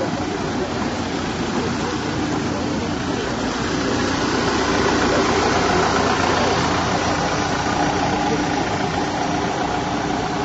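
Engine of a Ford Transit van running steadily as the van moves off slowly at low speed, a little louder in the middle of the stretch.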